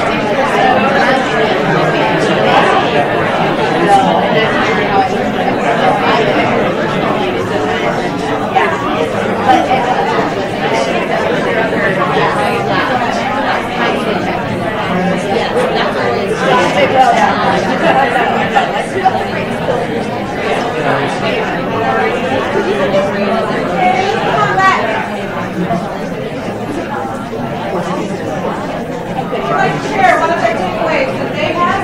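A roomful of people talking in pairs at once: a steady din of many overlapping conversations, with no single voice standing out.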